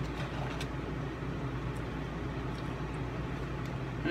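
Steady low machine hum, as of a motor or appliance running, with a few faint paper crinkles near the start as a fry carton is handled.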